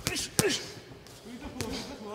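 Boxing gloves landing punches: a quick cluster of sharp thuds at the start, the loudest about half a second in, and another near the end. A brief voice follows the loudest hit.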